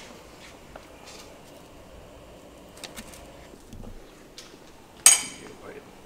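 Light kitchen clatter: a few soft clicks and taps, then, about five seconds in, one sharp metallic clank with a short ringing tail, as a utensil or lid strikes a metal pot or pan.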